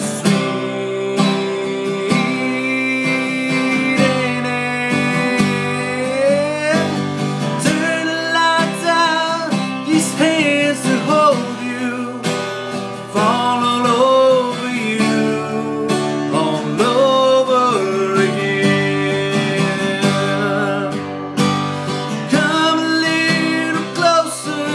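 Steel-string acoustic guitar played in steady strokes, with a man's voice carrying a wavering melody over it.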